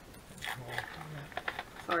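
A man moaning in the background: two short, low moans about half a second apart.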